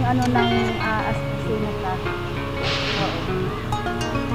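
Background music with plucked acoustic guitar notes, and a brief hiss about three seconds in.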